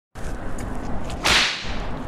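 A sharp, whip-like swoosh sound effect about a second and a quarter in, over a steady low background rumble.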